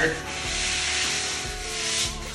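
Hands rubbing masking tape down hard onto MDF panels along the joints, a steady dry rubbing.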